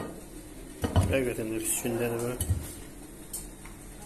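A ceramic plate clattering as a raw whole chicken is handled and shifted on it, with several sharp knocks about one to three seconds in.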